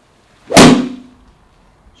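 One sharp crack of a golf iron striking a ball off a range hitting mat, about half a second in, with a short ring fading after it.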